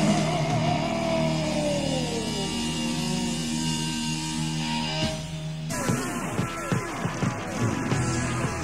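Live heavy rock band playing: a singer holds a note with vibrato that slides downward over sustained guitar and bass chords. About six seconds in the sound changes abruptly to a noisier, choppier passage with quick falling pitches.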